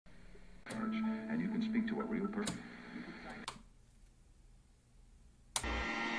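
Recorded voice and music for about three seconds, broken by sharp clicks, then about two seconds of near silence. Near the end a click is followed by a steady hum.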